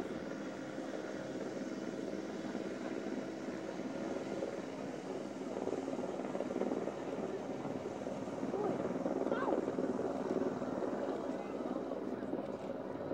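Steady drone of a helicopter, as picked up on news-helicopter footage, with faint voices underneath.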